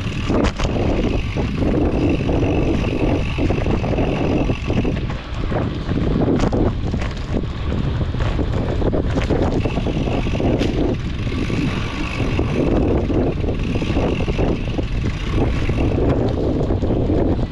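Wind buffeting the microphone of a camera riding on a mountain bike, over the steady rumble of knobby tyres rolling on dirt singletrack. Scattered short knocks and rattles come from the bike over bumps.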